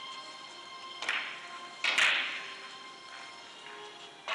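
Sharp clicks of billiard balls striking one another, once about a second in and again louder near the middle, ringing briefly in a large hall, over faint background music.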